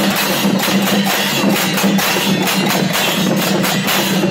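Newar dhime drums and hand cymbals played together in a fast, steady processional rhythm, about three to four cymbal clashes a second over a pulsing drumbeat.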